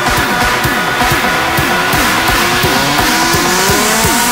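Electro house dance music in a DJ mix: a steady kick-drum beat under synth lines that rise in pitch from about a second in, a build-up.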